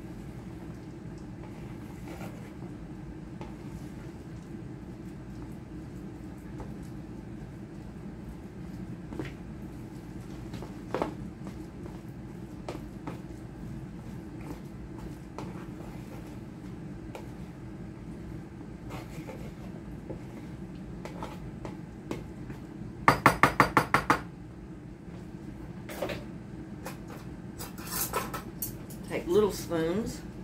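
Metal spoon stirring and scraping thick cookie dough in a plastic mixing bowl: soft, irregular scrapes and clicks over a steady low hum. About three-quarters of the way through comes a quick run of sharp taps, and a few more clicks near the end.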